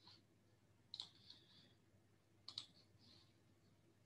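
Near silence with two faint clicks on a computer, about a second in and again a second and a half later, as the presenter's screen share drops out.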